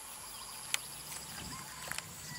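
Outdoor rural ambience dominated by a steady, high-pitched insect chorus, with a pulsing trill in it. Two sharp clicks come about a second apart, and a faint low hum sets in early.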